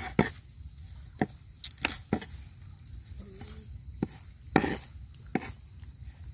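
Cleaver chopping through pandan leaves and garlic onto a wooden cutting board: irregular sharp knocks, about eight of them, the loudest about four and a half seconds in. Insects keep up a steady high chirring behind.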